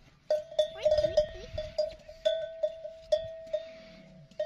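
A single-pitched metal animal bell clanking about a dozen times at irregular intervals as it is jostled, each strike ringing on. The clanking starts a moment in and thins out toward the end.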